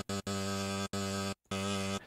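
A sampled, sustained pitched tone playing from the Arturia Pigments software synthesizer's sample engine, steady with many harmonics. It cuts out and restarts about four times with short gaps while the sample's start point is moved.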